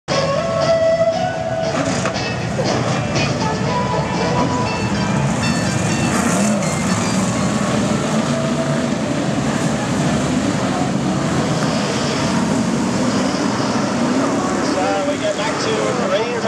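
BriSCA F1 stock cars' V8 engines running around the oval, their notes rising and falling as the cars pass.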